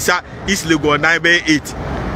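A man speaking in short phrases, then, about three-quarters of the way in, his voice stops and a steady low rumbling noise with hiss is left.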